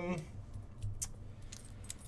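A lull in talk with faint room tone and a few light, sharp clicks scattered across it, like small handling noises. The very start holds the end of a drawn-out spoken "um".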